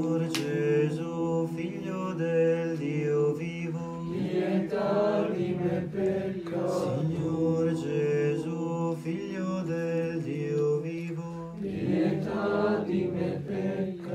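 Choir chanting a slow melody over a held low drone note, in phrases several seconds long with short breaths between them.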